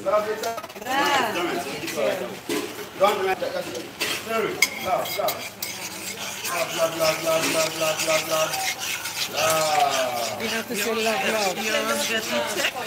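A metal spoon stirring in a stainless steel pot, clinking and scraping against the sides with many small clicks, while a blended liquid is poured in.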